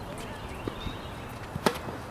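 Tennis ball struck by a racket: one sharp pop about one and a half seconds in, with a smaller knock earlier from the ball or a footstep on the hard court.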